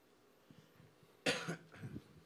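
A person coughs once sharply a little past halfway, followed by a weaker second cough.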